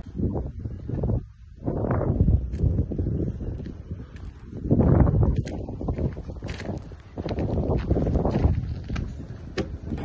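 Wind buffeting the microphone in uneven gusts, with scattered sharp clicks and knocks.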